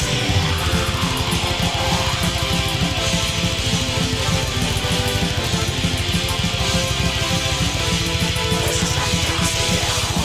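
Electric guitar playing a fast heavy-metal part, rapidly picked, over a dense, fast low pulse at steady loudness.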